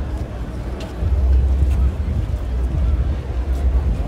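Outdoor street ambience: a low rumble that grows louder about a second in, under faint background voices.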